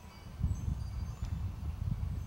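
Wind chimes tinkling faintly, a few scattered high notes, under a low wind rumble on the microphone that picks up about half a second in and is the loudest sound.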